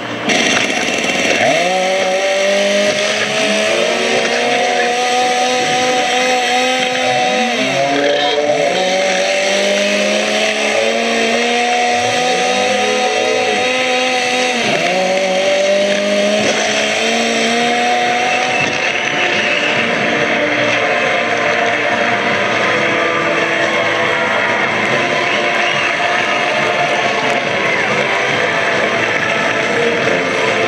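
Chainsaw engine revved again and again: each rev climbs in pitch and holds briefly, about six times in the first half. It then gives way to a steady, even roar.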